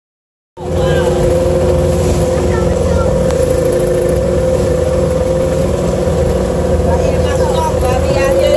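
Glass-bottom boat's engine running at a steady speed, a constant low drone with a steady hum, starting about half a second in.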